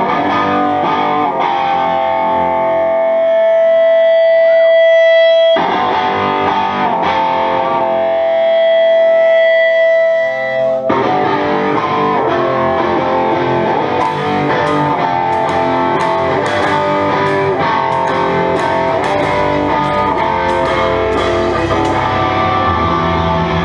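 Distorted electric guitar playing through an effects unit, holding long ringing notes that cut off sharply twice, then moving into a fuller, denser passage. Over the last eight seconds a steady high tick comes in about twice a second.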